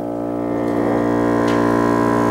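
Chamber ensemble of woodwinds, brass and double bass holding a sustained chord of several notes, swelling gently in loudness.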